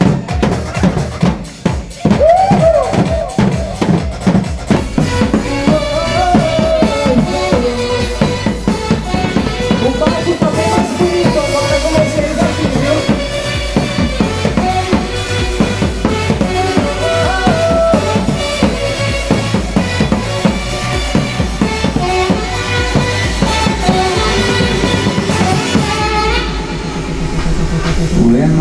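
Live band music driven by a fast, even drumbeat struck with mallets on a row of drums, with a saxophone melody over it. The drumming drops out about two seconds before the end, leaving a low sustained sound.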